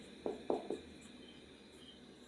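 Marker pen squeaking on a whiteboard in three short strokes as letters are written, all within the first second.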